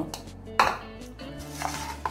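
A ceramic dish knocks once sharply on a stone countertop about half a second in, then a softer knock follows, over quiet background music.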